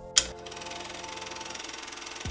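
A transition sound effect: a sudden hit, then a fast, even rattling with a few held tones under it.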